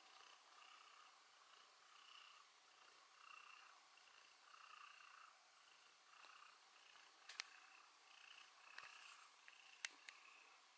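Domestic cat purring faintly, a soft swell roughly every 0.6 s as it breathes. A few sharp clicks come near the end.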